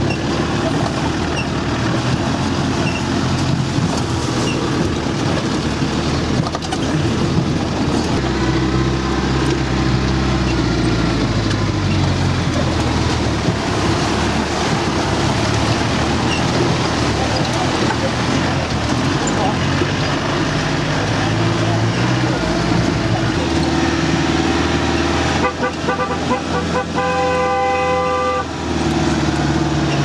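A 4x4's engine running as it drives over a rough, muddy dirt track, its pitch rising and falling as the driver works the throttle. Near the end a steady horn toot sounds for about two seconds.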